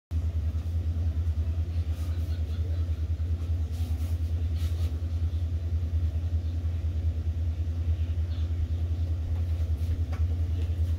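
A steady low rumble, with a few faint soft rustles at about two and four seconds in.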